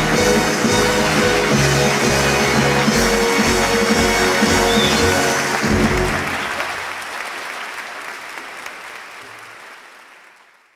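A live orchestra playing a loud closing number with audience applause; about six seconds in the music stops and the applause fades away.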